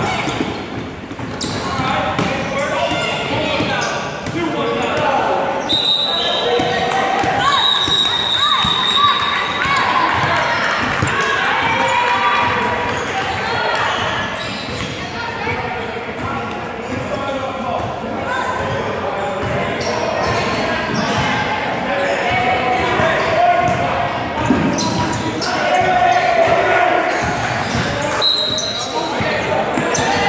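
Basketball bouncing on a hardwood gym floor during a game, mixed with players' voices and shouts in a large, echoing gym.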